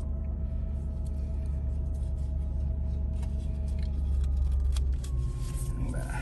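Jaguar XJR engine idling, a steady low rumble heard from inside the car's cabin, with faint steady tones above it.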